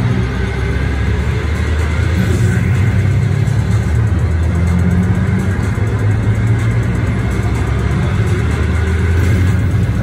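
Casino floor noise: a steady low rumble of slot machines and the crowd, with faint machine tones above it.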